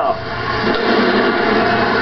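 Arena crowd cheering as a steady wall of noise as the game clock runs out on a home win, heard through a television broadcast.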